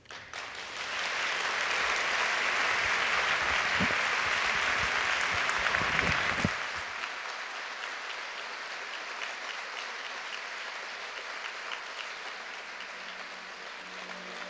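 Large audience applauding. The clapping swells within the first second or two, stays full for about six seconds, then falls away to lighter, steady clapping. Faint music comes in near the end.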